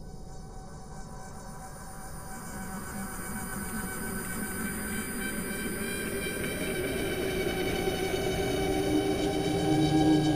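A soundtrack drone of many layered, held tones over a low rumble, swelling steadily louder.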